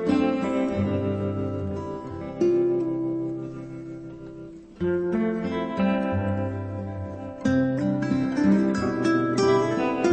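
Instrumental background music led by plucked strings, with a new chord struck about every two and a half seconds and left to ring and fade.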